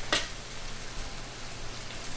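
Morel mushrooms frying in a pan of oil: a steady, even sizzle, with one brief sharp sound right at the start.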